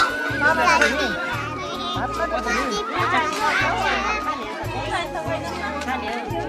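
Many children's voices chattering and calling out at once, with background music playing underneath.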